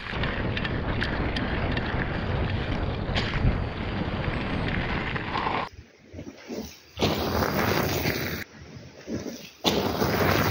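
Wind rushing over a handlebar camera's microphone as a mountain bike rides down a dirt trail, with small clicks and knocks from the bike on the ground. About halfway through this gives way to quieter stretches broken by loud surges of wind noise.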